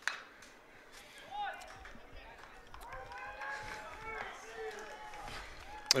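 A baseball bat hitting the ball with a sharp crack at the start, as the batter pokes a single through the infield, followed by faint distant shouts from spectators and players.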